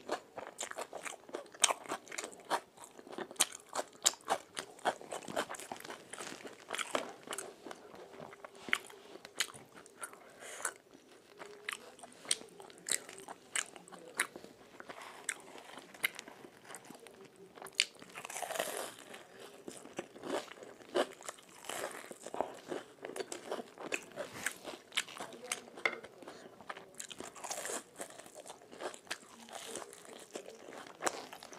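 Close-miked eating: bites into crisp deep-fried chops and battered fritters, then crunching and chewing, a rapid run of crackly crunches with a louder cluster of crunches about two-thirds of the way through.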